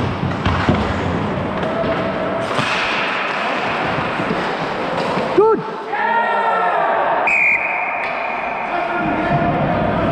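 Skates scraping on ice with knocks of sticks and puck, then a sharp hit about five seconds in and players shouting at the net. A little after seven seconds in a referee's whistle sounds one long steady blast, stopping play after the goalie's save.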